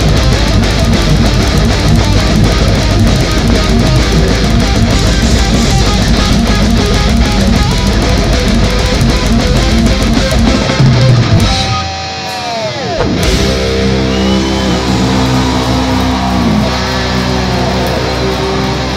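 Live death/thrash metal band: distorted electric guitars, bass and drums playing fast and dense. About eleven seconds in the notes bend downward and the playing drops away for a moment, then held, ringing guitar chords carry on to the end.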